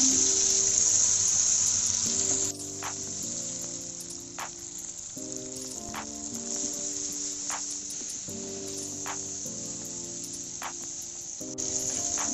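Shallots and tomatoes sizzling in hot oil in a kadai, a steady high hiss that drops away about two and a half seconds in and comes back near the end. Soft background music with slow changing chords and a light beat about every second and a half runs underneath.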